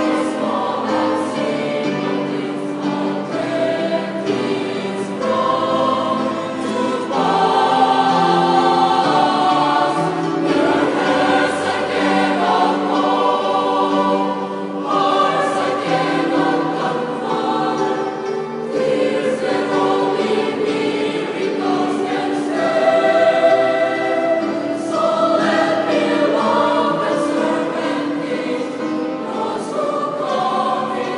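Choir singing in harmony, with long held chords that shift from phrase to phrase.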